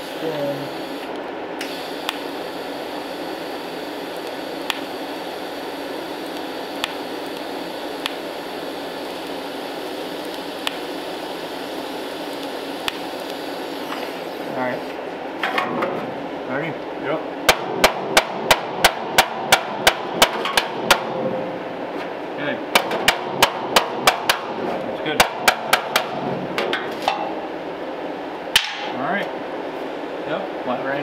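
Arc welder hissing and crackling as it lays a bead on thin body steel. About halfway through it stops and gives way to a hammer striking the weld against a dolly held behind the panel: two quick runs of sharp metallic blows, about four a second, then a single blow near the end. The blows planish the weld bead flush on a 1934 Ford quarter panel patch.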